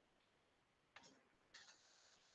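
Near silence: faint room tone with a single soft click about a second in and a faint hiss beginning near the end.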